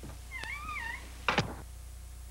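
A cat meows once, a short call that wavers up and down in pitch. A sharp knock follows a moment later.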